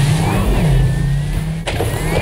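Sports car sound effect: a low steady hum with a thin rising whine, over background music, and a sharp click near the end.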